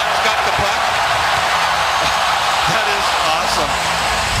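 Steady noise of a large arena crowd, many voices at once with no pause.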